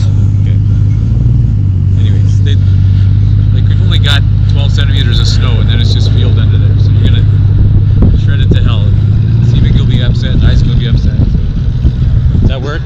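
Dirt bike engine idling steadily close to the microphone, its pitch rising slightly about nine seconds in.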